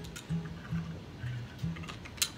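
Acoustic guitar with about five low single notes plucked one after another, mostly on one pitch with one lower note in the middle.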